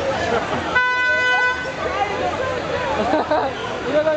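A car horn sounds once, a single steady toot of just under a second, about a second in, over a crowd's talking voices.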